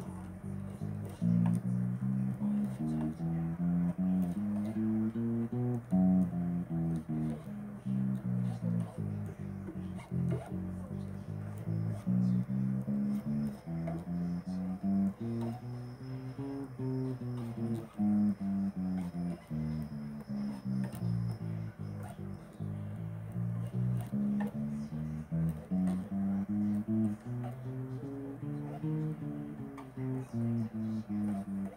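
Bass guitar played solo: a continuous line of plucked notes that climbs and falls in repeated runs.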